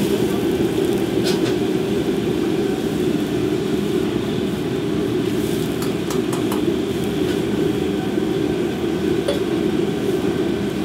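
Gas wok burner running with a steady, even noise under a wok of boiling water as napa cabbage hearts are blanched, with a few light clinks of a metal ladle against the wok.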